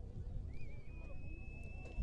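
Quiet outdoor ambience: a low rumble, faint distant voices, and a thin, steady high whistle-like tone that begins about half a second in and holds for around two seconds.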